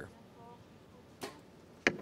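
A compound bow shot: a soft snap of the release about a second in, then a louder, sharper crack just before the end as the arrow strikes the target.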